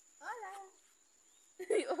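A young goat bleats once, a short call falling in pitch. A voice starts talking near the end.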